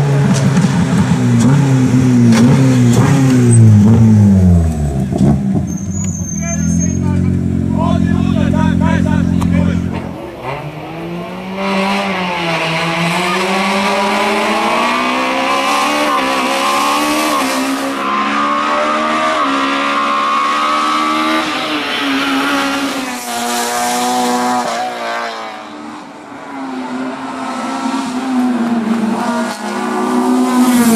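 Honda Civic race car's four-cylinder engine revving hard on a hill climb: its pitch drops in the first few seconds as it slows and shifts down, holds steady for a few seconds, then climbs and falls again and again through the gears.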